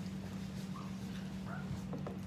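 A steady low hum, with a few faint short pitched sounds about a second in and again a little later.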